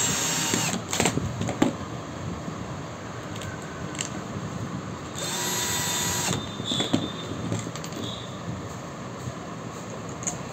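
Cordless drill-driver driving screws into an angle grinder's housing: two short runs of about a second each, near the start and about five seconds in, with a few sharp clicks between them.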